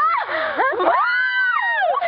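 Several girls screaming at once: long, high-pitched shrieks that overlap and slide up and down in pitch, dying away near the end.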